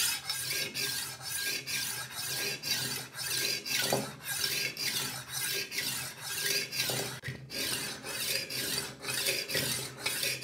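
Horl 2 rolling knife sharpener's diamond grinding disc rolled rapidly back and forth along a steel kitchen knife's edge: a rasping scrape repeated about three times a second. This is the grinding stage, worked until a burr forms on the blade.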